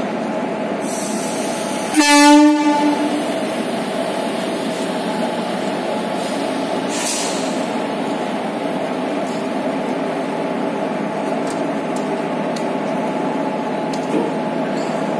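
A short, loud blast of an electric locomotive horn about two seconds in, over the steady hum of the idling WAP-4 electric locomotive. Two brief hisses, around one and seven seconds in.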